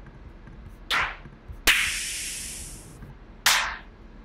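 Electronic snare and clap one-shot samples auditioned one after another: a short sharp hit about a second in, a longer hissy snare with a tail that fades over about a second, and another short sharp hit near the end.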